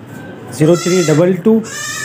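Goat bleating twice: a wavering call about half a second in, then a second, steadier call near the end.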